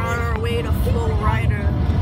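Steady low road and engine rumble inside a moving car's cabin, with a person's voice over it for the first second and a half.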